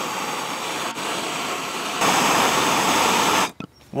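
Handheld gas torch flame hissing steadily against a padlock, heating it to melt through. The hiss grows louder about halfway through and cuts off suddenly shortly before the end.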